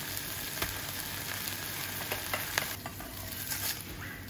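Sliced onions and lemon thyme sizzling in butter in a small stainless-steel saucepan, a steady hiss with scattered crackles and pops. The sizzle drops away shortly before the end.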